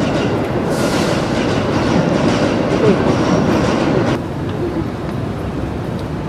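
Steady outdoor city rumble with faint voices mixed in, dropping suddenly to a quieter steady hum about four seconds in.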